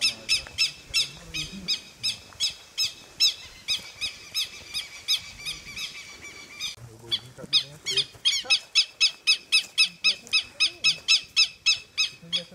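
A bird calling in a long series of short, high, falling chirps, about two to three a second, breaking off briefly about seven seconds in and then coming faster, about five a second.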